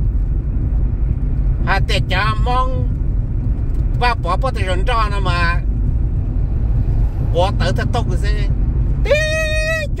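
Steady low road and engine rumble inside the cabin of a moving car, under a man's intermittent talk.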